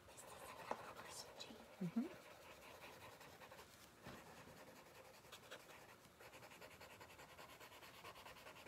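Faint scratching of a pencil shading on thick, textured mixed media paper. A brief murmur of a voice comes about two seconds in.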